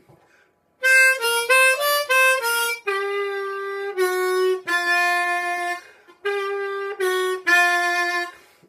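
Bb diatonic harmonica played in third position: a quick run of short notes, then longer held notes that step down in pitch through the bends on draw three to draw two.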